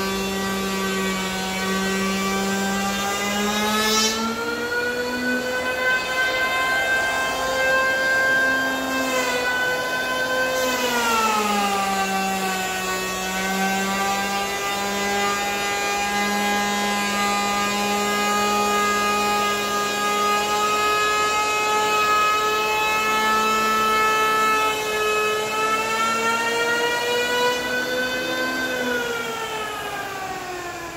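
Electric hand planer running as it shaves down a pine tabletop: a steady motor whine that drifts up in pitch, dips sharply about ten seconds in, holds, and falls again near the end.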